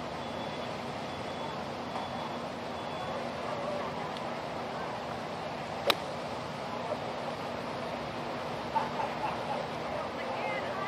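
A golf iron strikes the ball once, about six seconds in, with a single sharp, short crack on a pitch into the green. It sounds over a steady background noise from the course.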